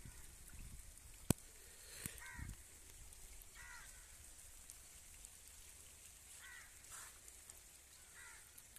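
A crow cawing faintly several times, over a quiet steady background of light rain. One sharp click sounds a little over a second in.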